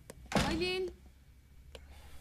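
A woman's voice calling out once, briefly, about half a second in. Otherwise a quiet room with a few faint clicks.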